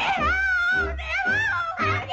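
1930s cartoon soundtrack music with a steady bass beat about twice a second. High wavering wails slide up and down over the beat.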